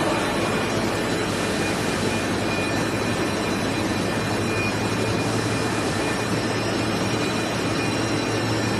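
Plastic extrusion film coating line running: a steady mechanical din of rollers and drives, with a low hum that grows a little stronger about five seconds in and a few faint steady whines above it.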